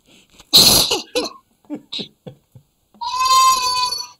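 Men laughing: a loud breathy burst of laughter about half a second in, short bits of laughter after it, and a long high-pitched laugh held on one pitch near the end.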